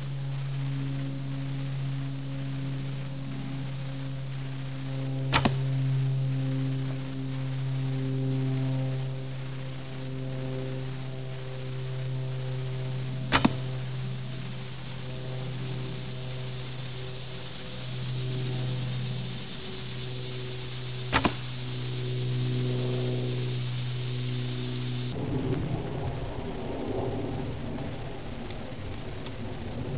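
Arrows shot from a recurve bow three times, each a sharp snap about eight seconds apart; the last two are doubled, as if release and strike. A steady low drone runs beneath and stops abruptly about 25 seconds in, and rustling through leafy undergrowth follows.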